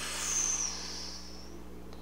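A person slowly breathing out, a soft breathy rush that fades away over about a second and a half, over a faint steady hum.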